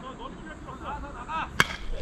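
Baseball bat hitting a pitched fastball: a single sharp crack about one and a half seconds in, over faint voices.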